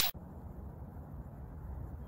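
Faint, steady outdoor background noise, mostly a low rumble, with the tail of a whoosh transition effect cutting off at the very start.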